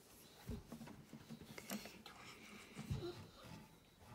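Soft knocks and small plastic clicks as Lego Dots tiles are pressed by hand onto a bracelet band lying on a table, with two firmer knocks about half a second in and near the end.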